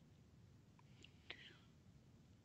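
Near silence: room tone, with one faint click a little past halfway.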